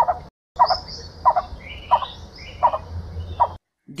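Blue-bearded bee-eater calling: a run of short, low, harsh notes, about one every two-thirds of a second. Thinner, higher gliding notes sound behind them, over a faint low hum.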